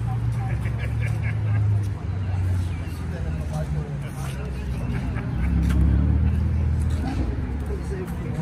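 A car engine running at low revs, a steady low hum that grows louder and deeper about five and a half seconds in, with people talking in the background.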